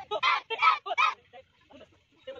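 A group of children shouting counts in unison as they punch, about three loud shouts a third of a second apart in the first second.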